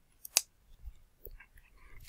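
A single short, sharp click about a third of a second in, with a few faint small clicks and mouth noises after it, in an otherwise quiet room.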